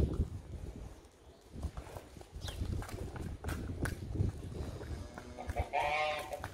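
Cattle hooves knocking and clopping irregularly on wet brick paving as several cows walk past, over a low rumble. A voice comes in briefly near the end.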